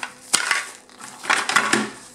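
Plastic bubble-wrap packing crinkling as it is handled, in short bursts of crackling: a sharp one about a third of a second in and a longer stretch in the second half.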